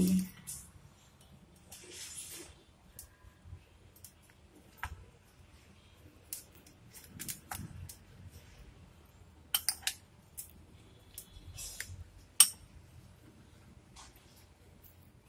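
A metal spoon stirs a dry ground-spice mixture in a glass bowl: soft scraping with scattered clinks of the spoon against the glass, the sharpest clink near the end.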